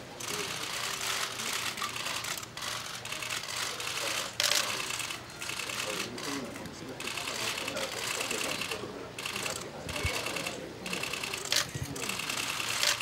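Many press camera shutters firing in rapid bursts: dense clicking that stops and starts every second or so.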